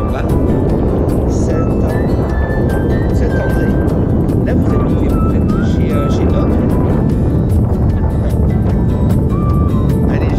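Steady rush of airflow buffeting the microphone of a camera on a tandem paraglider in flight, with short high-pitched tones heard faintly over it.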